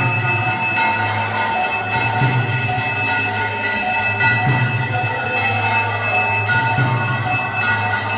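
Temple bells ringing continuously for the aarti worship, many overlapping steady tones sounding together over a low drone.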